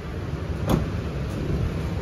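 Isuzu MU-X's 1.9-litre four-cylinder turbodiesel idling steadily, a low even rumble, with a single sharp click about two-thirds of a second in.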